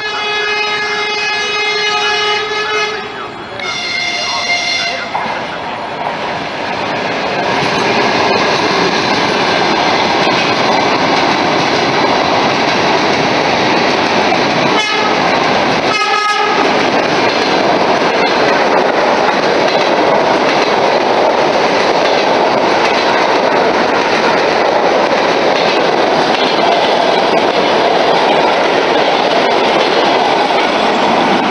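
Electric commuter train horn sounding a long blast and then a shorter second one, followed by the loud, steady running noise of an electric train passing close by, with a brief horn toot in the middle.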